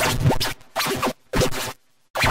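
Harshly distorted, effects-edited children's TV soundtrack with a scratchy sound, which about half a second in breaks into a few short choppy bursts separated by brief cuts to silence.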